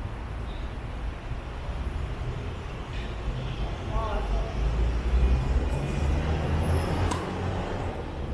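Tennis serve: a single sharp pop of the racket striking the ball about seven seconds in, after the toss. Under it runs a steady low rumble of traffic noise.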